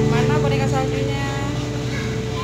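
A steady machine hum, like a motor running, under talking voices.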